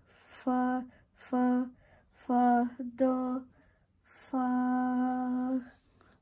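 A voice singing solfège note names, five separate notes on nearly one pitch, the last held for over a second.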